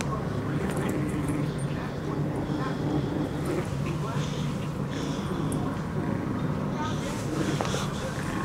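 Two Yorkshire terriers playing tug-of-war over a plush toy, with small whining dog noises, over a steady low hum.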